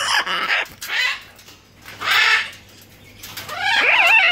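Military macaw making a few short, harsh rasping sounds, then a wavering call that starts near the end.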